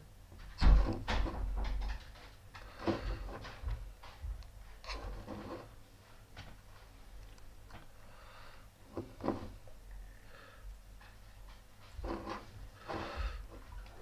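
Handling noise of a box mod and its rebuildable dripping atomizer being worked with a thin wire pick: scattered light clicks, taps and rubs, with a louder thump just under a second in.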